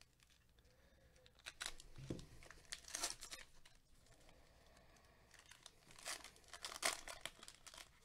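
Foil trading-card pack wrapper crinkling and tearing as it is opened by hand, faint, in two spells of crackles: one around two to three seconds in and another around six to seven seconds in.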